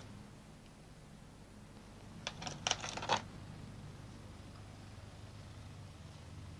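Small clay flowerpot being knocked to free a rooted azalea cutting and its ball of compost: a quick run of light clicks and knocks about two seconds in, over faint room tone.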